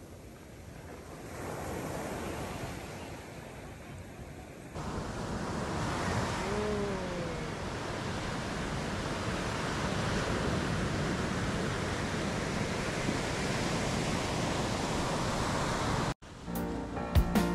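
Ocean surf breaking and washing up a sandy beach, a steady rushing wash that jumps louder about five seconds in.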